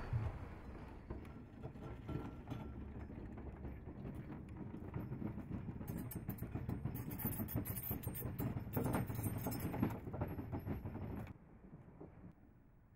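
Loaded hand-pushed trolley rolling along a narrow rail track, its wheels rattling and clicking over the rails. The sound cuts off suddenly near the end.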